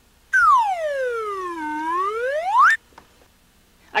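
Comic sound effect after a punchline: one tone that glides slowly down and then swoops back up, stopping sharply after about two and a half seconds.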